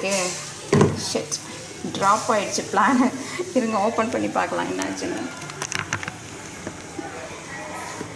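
A person's voice talking for a couple of seconds in the middle, with kitchen clatter around it: a sharp knock about a second in and a few light clicks near the six-second mark.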